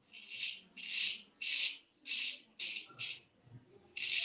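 Filarmonica 14 straight razor shaving a lathered beard: six short scraping strokes, about two a second, the blade 'singing' as it cuts the whiskers.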